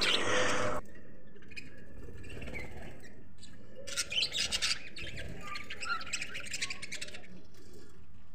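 Budgerigar nestlings in a nest box giving a harsh, raspy burst of squawking calls about four seconds in, lasting about a second, followed by a few soft chirps. Before this, a louder sound cuts off abruptly under a second in.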